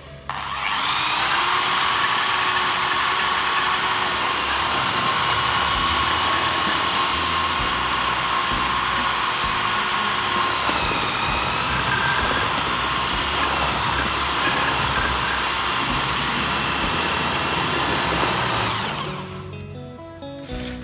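Corded electric drill with a paddle mixer running at high speed in a bucket of cement mix, a loud steady motor whine. The whine drops slightly in pitch about halfway through, then the drill winds down and stops near the end.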